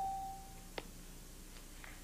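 A game-show electronic chime: one steady tone at a single pitch, fading out within the first second, followed by a short click.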